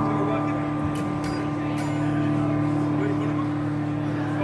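A rock band's guitars and bass ringing out one held chord, slowly fading, with a few faint clicks about a second in.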